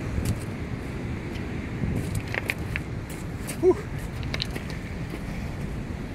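Steady roar of ocean surf from big waves, with scattered crunching footsteps on beach pebbles.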